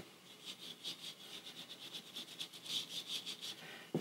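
Small paintbrush stroking finish onto a painted wooden carving: faint, quick, scratchy brush strokes, several a second.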